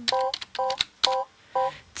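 Short electronic beeps like touch-tone dialing, in an irregular rhythm, mixed with sharp clicks: the song's backing in a pause between sung lines.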